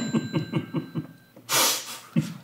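Men laughing at a joke's punchline: a run of quick, rhythmic ha-ha pulses for just over a second, with a faint high ringing tone over it, then a loud, breathy burst of laughter near the end.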